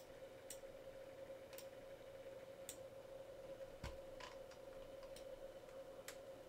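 Faint, sparse computer mouse clicks, about seven spread over several seconds, over a faint steady hum.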